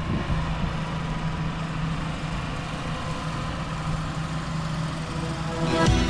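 Tractor engine running steadily at a constant pitch. Rock music comes in near the end.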